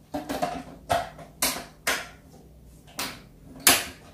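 Plastic lid of a Ninja blender pitcher being fitted and locked on, then the pitcher handled: about six sharp plastic clacks spread out, the loudest near the end.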